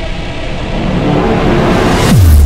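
Cinematic intro sound design: a dense rumbling swell that grows steadily louder, building up like a riser.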